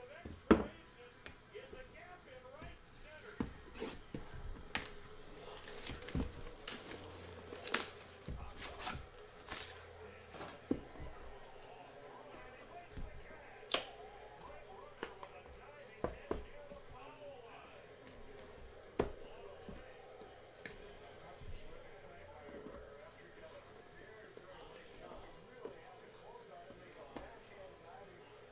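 Handling of rigid cardboard trading-card boxes: scattered sharp taps and knocks as a box lid is opened and the inner boxes are lifted out and set down on the table, most of them in the first two-thirds.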